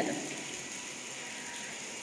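A steady hiss of background noise, with a faint constant tone under it, in a gap between spoken phrases.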